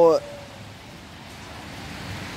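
Steady hiss of rain falling.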